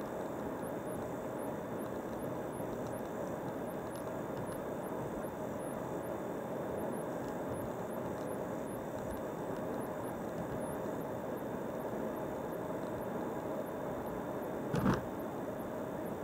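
Steady road and engine noise of a moving car heard from inside the cabin, with one short thump near the end.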